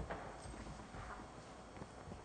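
Faint footsteps on a hard floor with a few small knocks, over low room noise.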